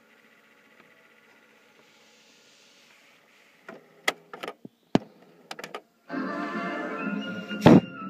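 Philips D8438 radio cassette recorder's soft-touch cassette keys clicking several times in quick succession, after a faint hum from the deck. About six seconds in, music starts playing from the tape through the built-in speaker, with one loud click near the end.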